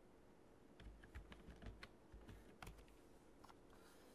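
Faint typing on a computer keyboard: a quick, uneven run of key clicks that starts about a second in and stops shortly before the end.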